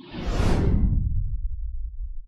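Cinematic whoosh sound effect of an animated logo intro: a swoosh sweeping down in pitch into a deep low rumble that slowly fades.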